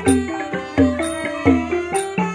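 Khmer pinpeat ensemble playing: wooden roneat xylophones and a gong circle strike a quick, busy melody over strong low strokes that recur about twice a second, with bright clinks from small chhing cymbals.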